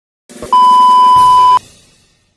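A loud, steady electronic beep at a single pitch lasting about a second, over a faint hiss, then trailing off.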